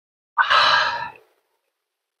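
A man's loud, breathy sigh, just under a second long.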